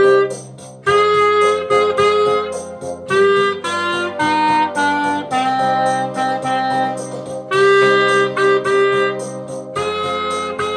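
Clarinet playing a simple beginner-band melody of short and held notes in phrases, stepping down in the middle and returning to the opening note near the end. It plays over a recorded accompaniment with a steady beat.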